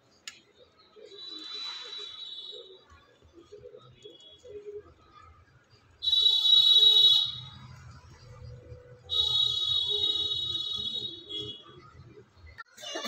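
A shrill, high-pitched alarm-like tone sounds three times: faintly about a second in, then loudly with a sudden start at about six seconds for a second and a half, and again from about nine seconds for about two seconds.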